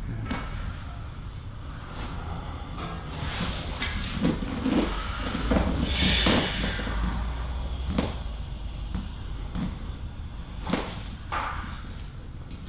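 Clothing and floor cushion rustling as a person shifts his weight and presses into another lying face down, thickest through the middle, with a few soft knocks.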